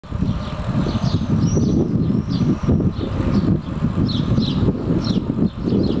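Wind buffeting the microphone of a moving camera, a dense fluttering rumble, with short high chirps over it several times a second.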